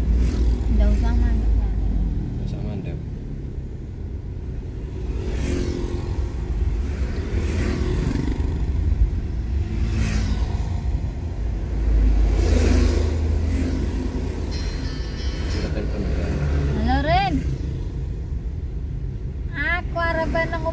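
Steady low rumble of a car driving, heard from inside the cabin. Voices and music sound over it, with a wavering sung line near the end.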